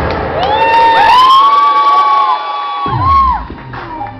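Audience screaming and cheering, several long high-pitched shrieks overlapping, over dance music whose bass drops out for a moment and comes back near three seconds in.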